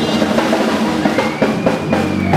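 Band music with a drum kit prominent, sharp drum strokes falling over sustained instrument notes.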